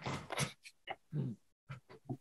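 Several short, soft vocal sounds, each under half a second: one at the start, one about a second in, and two quick ones near the end.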